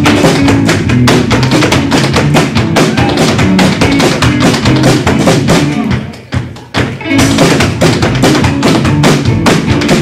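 Live fiddle tune with snare drum and upright bass, with the fiddler's stepdancing feet tapping on the stage in time. About six seconds in the band drops out for about a second, then comes back in.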